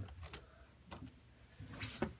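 Quiet room tone with a steady low hum and a few faint, short clicks, with a brief soft rustle near the end.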